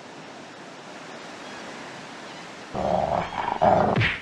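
Steady wash of sea surf, broken about three seconds in by a loud burst of sound that lasts a little over a second.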